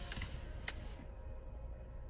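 A rustling hiss with a few sharp clicks, the loudest just before a second in, stopping about a second in; a low steady hum runs underneath.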